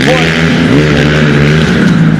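Dirt bike engine running loudly at a fairly steady pitch.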